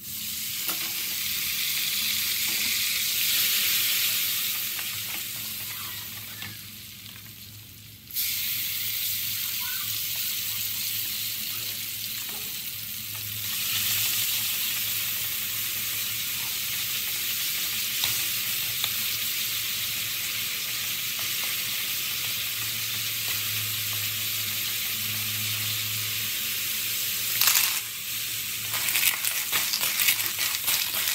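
Minced garlic sizzling in oil in a metal pan while a wooden spatula stirs it; the sizzle starts suddenly, dies down, then jumps back up about eight seconds in and holds steady. Near the end a loud burst of sizzling and clattering as cockles in their shells are tipped into the pan.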